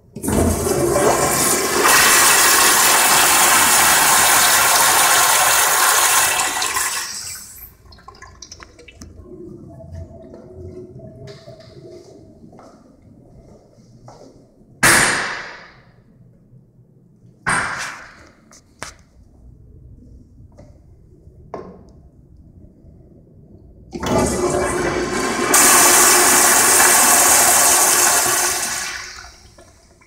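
Two flushes of American Standard Afwall wall-hung commercial toilets, each a loud rush of water from a flushometer valve lasting about seven seconds before cutting off fairly quickly. A few brief knocks and clatters fall between the two flushes, the loudest about halfway through.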